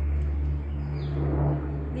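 A steady low hum that carries on unchanged through a pause in the talk.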